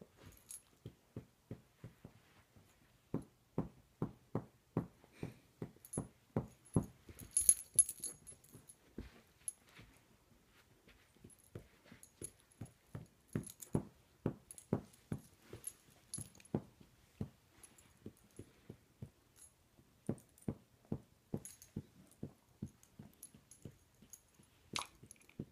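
Two dogs, a beagle-type and a golden retriever, play-wrestling: a run of short, rhythmic dog noises about three a second that lets up twice. Metal collar tags jingle now and then, loudest about eight seconds in.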